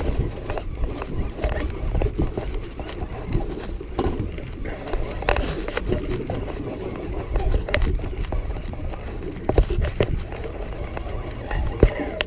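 Wind rumbling on the microphone and water washing against a small boat's hull, with scattered sharp knocks.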